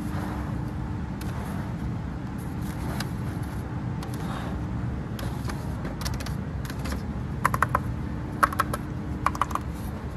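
Fingertips tapping on the plastic shells of bicycle helmets, in three short clusters of light, quick taps in the second half, over a steady low background hum.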